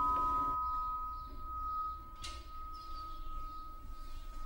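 Electronic doorbell chime, two clear tones ringing on and fading: the lower tone dies away about two seconds in and the higher one lingers. A single sharp click comes just after the lower tone stops.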